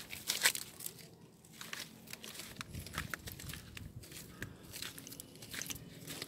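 Dry leaves and debris crunching and crackling underfoot in irregular steps, the loudest crunch about half a second in.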